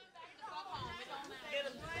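Quiet audience chatter with scattered laughter: many voices at once, none in the foreground.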